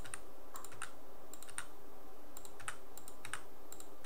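A string of light, irregular clicks from a computer mouse and keyboard as chart drawings and indicators are deleted.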